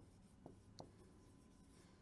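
Very faint marker strokes on a whiteboard, with a couple of soft taps in the first second; otherwise near silence.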